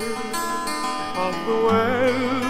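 Music: acoustic guitar notes picked and left ringing between sung phrases of a folk song, with a wavering voice with vibrato coming back in near the end.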